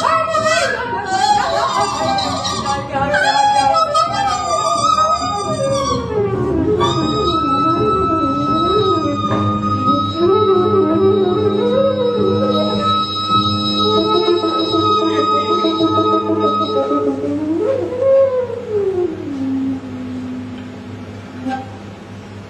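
Free-jazz improvisation by a trio with double bass and wind instruments: low pitches slide up and down continuously while a high, steady flute-like tone is held for about ten seconds in the middle. Near the end the sliding line settles on one low held note and the music drops in level.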